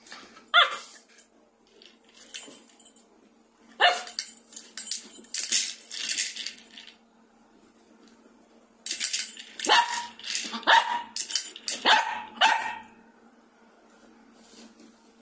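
Toy poodle barking in short sharp barks, in two bouts: a few around four seconds in, then a quick string of them from about nine to thirteen seconds in.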